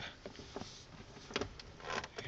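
Porsche 911 door stay (check strap) working as the door swings, its frame attachment tightened by a newly fitted M6 bolt: only a few faint clicks, and the stay is quiet now that the bolt takes up the play that made it snap.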